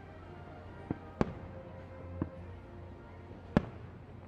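Aerial fireworks shells bursting: four sharp bangs, two close together about a second in, another a second later, and the loudest near the end.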